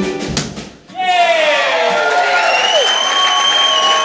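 Ukulele strummed in quick rhythmic strokes that break off just under a second in. Then a man's singing voice holds the song's long final note.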